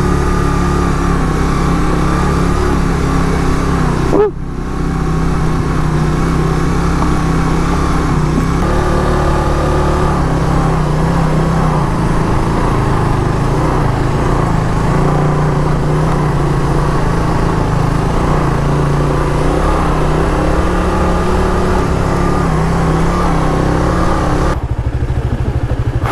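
Suzuki GSX-R150 single-cylinder motorcycle engine running steadily while riding, heard from on the bike, with one brief drop in sound about four seconds in.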